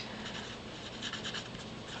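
Mechanical pencil writing on paper: the lead scratches in a run of short strokes as letters are written.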